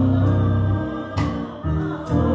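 A small church choir singing a gospel song over steady, held low accompaniment notes, with a short break between phrases a little after a second in.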